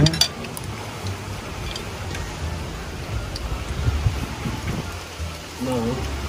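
Wind buffeting the microphone: an uneven low rumble over a steady hiss, in stormy weather.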